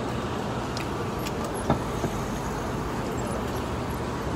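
Steady city street traffic noise, with two light knocks in close succession around the middle.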